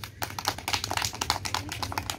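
A rapid, irregular run of sharp clicks or taps, several a second.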